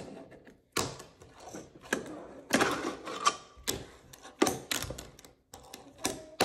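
A fingerboard being ridden on a wooden ramp set and tabletop: its small wheels rolling over the wood, with several sharp clacks as the deck and trucks knock against the wood.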